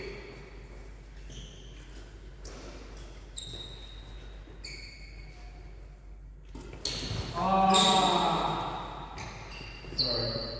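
Badminton doubles rally in a sports hall: a shuttlecock struck back and forth by rackets, with short high squeaks of shoes on the court floor. A player's voice rings out loudly about three-quarters of the way through.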